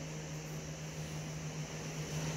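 A steady low machine hum over a faint even hiss, with no distinct events.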